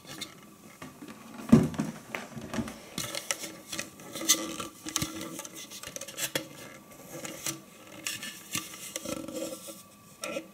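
Clear plastic bowl and lid of a Moulinex Masterchef 750 food processor handled and turned in the hands: scattered light knocks and clicks of hard plastic, with one louder knock about a second and a half in.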